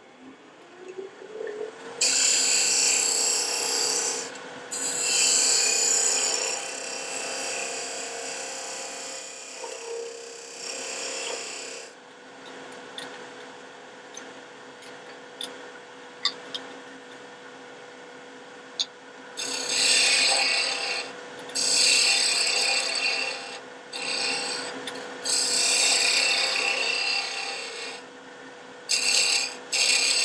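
Wood lathe motor spinning up with a rising whine in the first two seconds, then running with a steady hum. Over the hum, a beading tool cuts into the spinning wooden pen blank in long bouts of shaving noise, with a quieter stretch of a few seconds in the middle.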